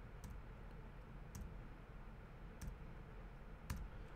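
Faint taps of a computer keyboard key, four clicks a little over a second apart, over a low steady hum.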